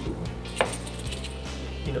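Quiet background music with a steady low bass, and a single light click about half a second in.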